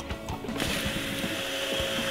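Primera AP360 label applicator's motor starting about half a second in and running steadily, spinning a glass bottle on its rollers to wrap on a label.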